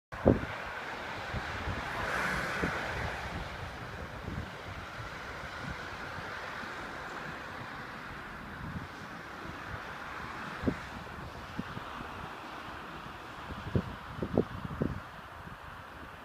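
Wind blowing across the microphone: a steady rush with short low buffeting thumps, several of them near the end.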